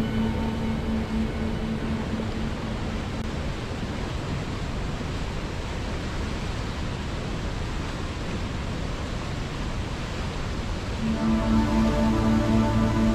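Steady rush of river water. Calm music of long held notes fades out just after the start and comes back, louder, about eleven seconds in.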